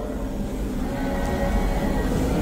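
Low steady rumble with a faint hum: the room's background noise, with no speech.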